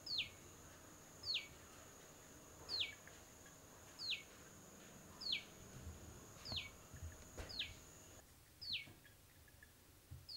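A bird calling over and over, faint: a short falling whistle repeated about nine times, roughly once every second and a bit. Under it a faint, high, steady whine stops about eight seconds in.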